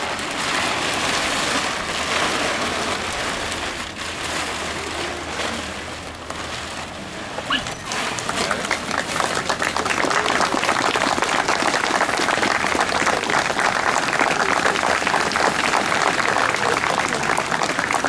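A plastic tarp rustling as it is pulled off the monument, then a crowd applauding, the clapping swelling about eight seconds in and holding steady.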